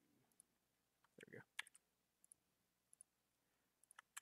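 Near silence with a few faint computer mouse clicks, about one every second, and a brief soft sound a little over a second in.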